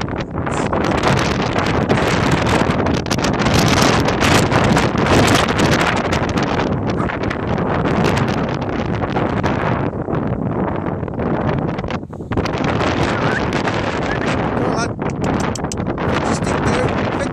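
Strong wind buffeting a phone's microphone: loud, continuous rushing noise that eases briefly about ten and again about twelve seconds in.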